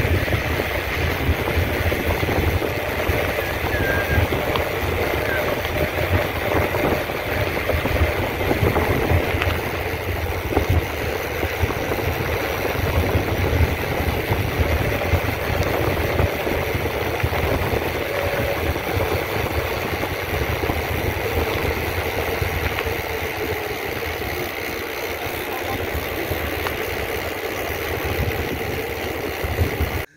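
Wind buffeting the camera microphone over the rumble of mountain-bike tyres on a rough concrete lane during a fast ride, a steady, dense rush throughout.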